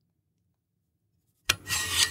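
Silence, then about one and a half seconds in, a sudden rubbing and scraping as the jointed metal bars of a squat demonstration model are moved by hand.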